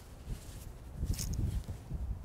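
Quiet open-air background: an irregular low rumble on the microphone, with a brief faint hiss about a second in.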